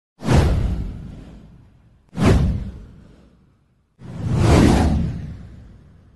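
Three whoosh sound effects for an animated news title card, about two seconds apart, each coming in suddenly with a low rumble and fading away over a second or two; the third swells in more slowly.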